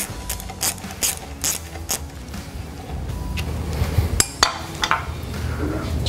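Ratcheting metal clicks, about two and a half a second, from hand work on a clamshell split-frame pipe-severing lathe, dying away after about two seconds and followed by a few scattered clicks and knocks.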